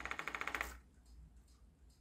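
Small battery-powered DC motor spinning a neodymium magnet on its shaft, with a rapid, even clicking as a hand-held magnet is held close. The clicking stops suddenly about three-quarters of a second in, the hand-held magnet's pull being strong enough to stop the shaft; a few faint ticks follow.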